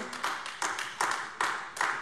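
Sparse applause: handclaps at about two to three a second.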